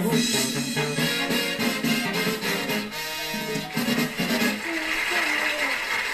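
Mexican banda music with trumpets, sousaphone and drums, heard through a television speaker.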